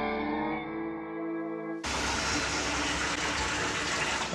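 A short music sting of held chords that cuts off about two seconds in, replaced by the steady rushing of liquid gushing from a hose into a half-full plastic barrel.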